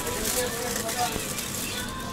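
Plastic bag and aluminium foil crinkling and rustling as hands open a foil-wrapped package, a steady crackly rustle.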